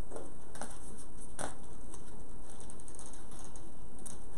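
Paper and sticker sheets being handled and peeled by hand: a few sharp clicks in the first second and a half, then a run of fine rapid crackly ticks.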